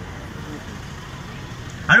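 A steady low background rumble and hiss during a pause in a man's speech over a loudspeaker system, with his amplified voice starting again near the end.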